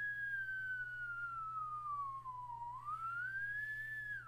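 A single whistled tone glides slowly down in pitch, swings back up near the end, then drops away quickly, like a comic falling whistle.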